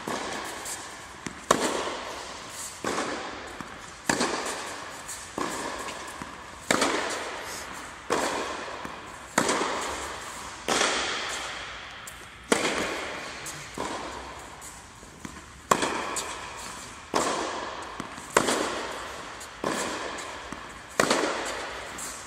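A tennis ball struck back and forth with rackets in a rally, a sharp pop about every second and a half, each hit ringing out with a long echo in a large indoor tennis hall.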